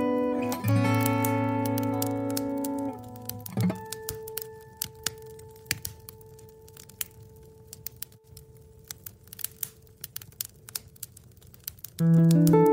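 Solo acoustic guitar plays chords, then a last note rings out about three and a half seconds in and slowly fades. Through it and after it, a wood fire in a wood-burning stove crackles with irregular sharp pops.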